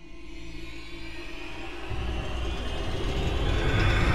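Dark ambient score swelling in: a steady droning tone over a deep rumble that builds in loudness and grows heavier about two seconds in.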